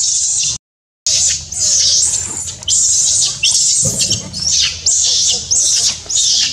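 Baby macaque giving shrill distress screams, a run of repeated cries each falling in pitch, about one a second. A brief dropout to silence comes about half a second in.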